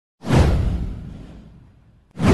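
A single whoosh sound effect with a deep bass underneath, swelling in suddenly a fraction of a second in and fading away over about a second and a half.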